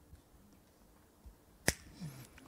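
A single sharp click near the end of an otherwise quiet pause.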